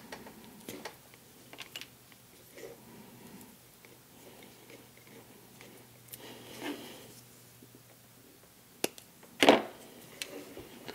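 Faint handling noise of a thin microphone cable and small plastic parts being worked by hand: scattered light clicks and rustles. A sharp click comes just before the end, followed by a louder knock.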